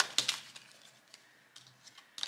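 Tarot cards shuffled by hand: a quick run of crisp card clicks in the first half-second, trailing off into a few faint taps as the cards are handled.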